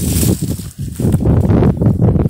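Wind buffeting a phone's microphone outdoors: a loud, irregular low rumble that rises and falls in gusts.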